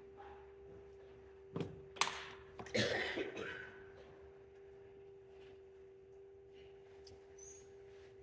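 Electric pottery wheel running with a steady motor hum while a vase neck is thrown on it. A few short, louder noises break in between about one and a half and three and a half seconds in.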